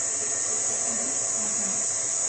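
Electric stand mixer running steadily with its paddle attachment, beating butter and sweetener, heard as an even motor hum under a high hiss.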